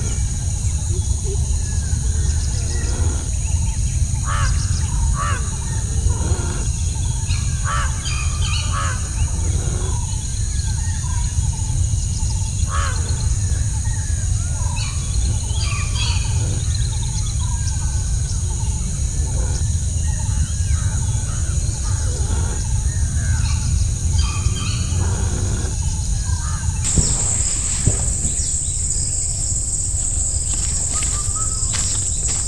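Birds calling and chirping at scattered moments over a steady high insect drone and a low background rumble. About 27 seconds in, a louder, higher insect buzz takes over.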